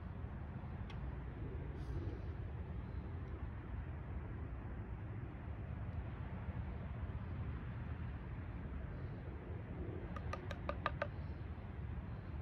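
Steady low outdoor background rumble, with a quick run of about seven sharp ticks near the end.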